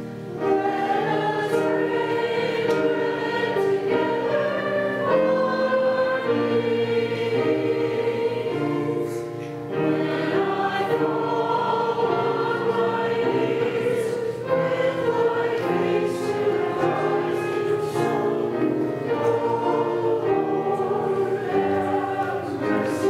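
A group of voices singing a slow hymn, holding sustained notes that change about once a second.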